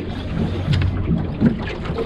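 Wind buffeting the microphone over water lapping at a small boat's hull: a steady low rumble of noise.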